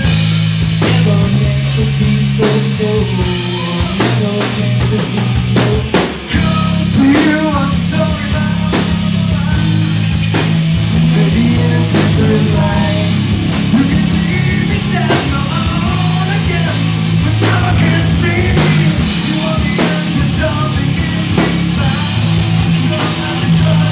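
Live rock band playing loud: electric guitar and bass guitar over a steady drum-kit beat, with a singer's voice at times. The band drops out briefly about six seconds in, then comes back in full.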